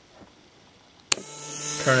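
A sharp click as the Lego Power Functions battery box is switched on, then the Lego Power Functions M (medium) motor whirring, its steady whine growing louder over the following second as it spins up.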